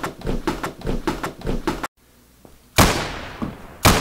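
Quick repeated sharp sounds, about four a second. Then a sudden drop to silence and two loud bangs about a second apart, the first ringing on and fading slowly.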